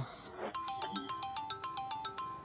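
Smartphone ringtone playing a quick, repeating melody of short bright notes. It pauses for about half a second at the start and then resumes.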